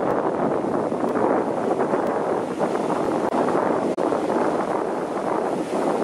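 Rough sea surf washing over rocks, with wind on the microphone: a steady rush of noise.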